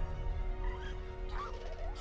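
Film-trailer soundtrack: a low held score chord, with a few short warbling calls from a young velociraptor sound effect.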